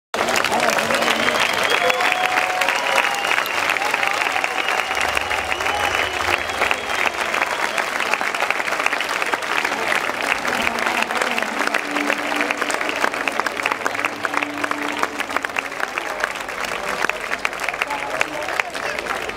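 Audience applauding: dense, steady clapping from many hands that eases slightly toward the end.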